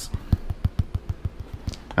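Fingers tapping and rubbing on a cardboard shipping box, a quick irregular run of light clicks, about ten a second.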